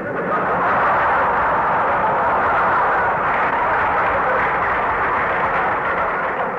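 Studio audience laughing and applauding in a big, sustained burst that starts suddenly and holds steady for several seconds, easing off slightly near the end. It is heard through an old broadcast recording with a narrow, muffled top end.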